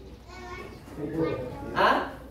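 Speech only: quiet talking, then a man's short "ha?" near the end.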